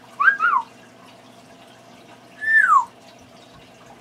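Timneh African grey parrot whistling: two quick up-and-down notes near the start, then about two seconds in a longer note that holds and then slides downward.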